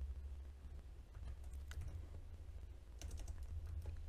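Faint typing on a computer keyboard: a few scattered keystrokes, with a quick cluster near the end, over a low steady hum.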